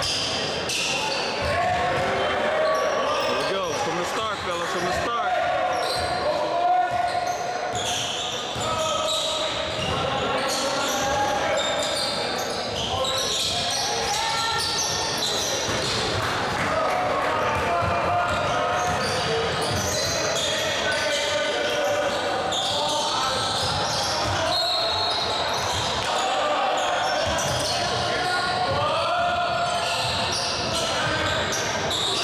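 A basketball bouncing and being dribbled on a hardwood gym floor during live play, in the echo of a large gym. Players and spectators keep up steady talking and calling over it.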